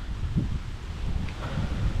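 Wind buffeting the microphone outdoors: a steady low rumble.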